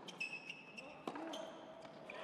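Faint tennis rally on a hard court: a string of sharp knocks from the ball on racket strings and court, a few tenths of a second apart, with a brief high squeak in the first half.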